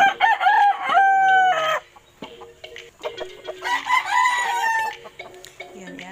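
A rooster crows loudly, the crow ending in a long held note just under two seconds in, and a second crow follows about three and a half seconds in.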